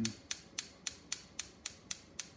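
Light, evenly spaced taps, about four a second, on an engine's knock sensor, struck to test whether the ECU picks up knock.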